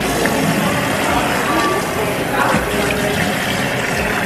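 Tap water running steadily into a sink.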